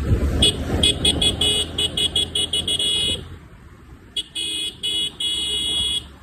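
Motorcycle horn honked in a fast run of short high-pitched toots, about four a second; after a pause of about a second, a few more toots and then a held blast. Road and wind rumble from the moving bike runs underneath, louder in the first half.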